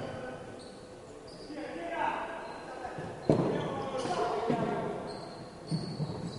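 Echoing sports-hall sound of futsal play: the ball being kicked and bouncing on the wooden court, with one sharp kick about three seconds in, and players' voices carrying in the hall.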